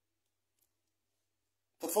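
Near silence during a pause in speech, then a man starts talking just before the end.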